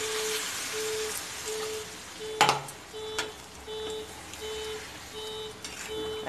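Water poured from a glass into a kadai of hot paneer curry, hissing and bubbling for the first couple of seconds, with a sharp knock about two and a half seconds in. A short electronic beep repeats steadily, about once every 0.7 seconds, throughout.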